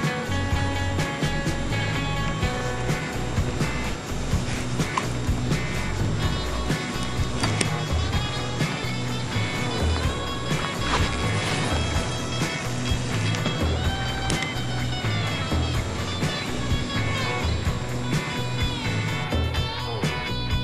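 Background music, running steadily throughout.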